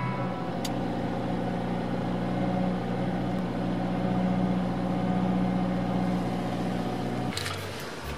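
Subaru Impreza Sport's flat-four boxer engine running at a fast idle of about 2,000 rpm in park just after starting, heard as a steady drone from inside the cabin. There is a brief click about half a second in, and the sound drops and changes near the end.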